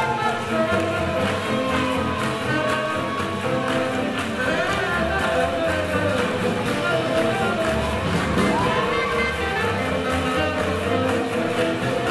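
Live swing jazz band playing steadily, with saxophone, double bass and drums.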